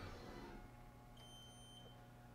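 A single faint, short electronic beep from the Haas Mini Mill's control panel as the Power Up/Restart key is pressed, about a second in, over near silence.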